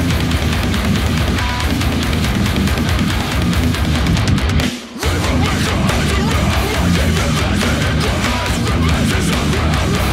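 Heavy, distorted electric guitar music with fast riffing, breaking off briefly about five seconds in before carrying on.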